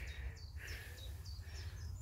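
A small bird chirping repeatedly, short high notes about three a second, over a faint low rumble.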